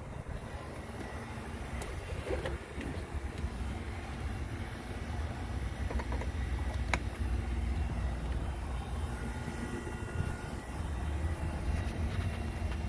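Nissan D21 pickup's 2.0-litre four-cylinder engine idling steadily, heard from the cab, with a few light clicks of handling.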